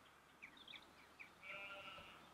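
Faint short bird chirps, then a sheep bleats once, for about half a second, near the end.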